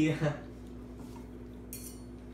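A short laugh right at the start, then a brief high scrape of a table knife against a plate near the end as food is cut.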